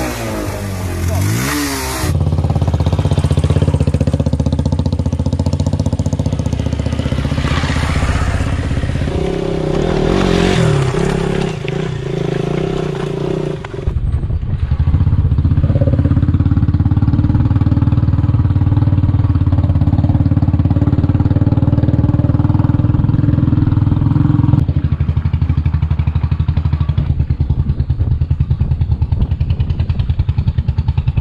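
Motorcycle engine revving up and down, then running steadily under way on a rough stony dirt track. The sound changes abruptly a couple of times.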